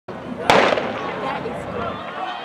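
A starting gun fired once about half a second in, the start signal of a 200-metre sprint, its bang ringing briefly, with crowd voices underneath.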